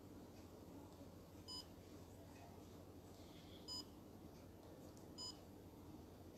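Three short electronic beeps at uneven intervals, each a brief cluster of high pitched tones, over faint low room hum.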